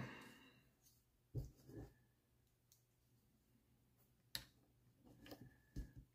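Near silence broken by a few faint, sparse clicks of small plastic parts being handled. These are wheelbase shims being fitted onto the rear suspension arm hinge pins of an RC buggy, with one click about a second and a half in, another past four seconds, and several soft ones near the end.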